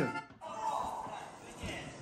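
Faint voices and music from the tablet's own speaker; the sound cuts off sharply just after the start, then comes back quietly.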